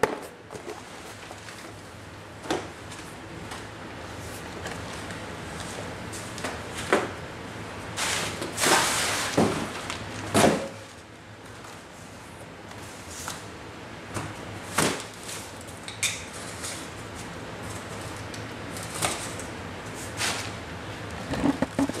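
A cardboard shipping box being handled and opened, heard as scattered knocks and thumps with a longer rasping, scraping noise about eight to ten seconds in.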